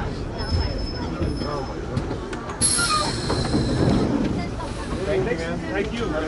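R1-9 vintage subway train rumbling, with a thin, high-pitched squeal from the wheels or brakes in the first two seconds. About two and a half seconds in, a sudden sharp hiss with a high squealing edge starts and fades out over a second or so.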